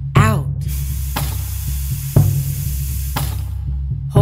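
Slow ambient meditation music with a steady low drone and a soft beat about once a second, opened by a short falling tone. Over it a long breathy hiss runs for about three seconds: a breath being let out, marking the exhale phase of box breathing.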